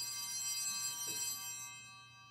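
Altar bells ringing at the elevation of the chalice after the consecration, a cluster of high, clear tones struck just before and dying away by the end.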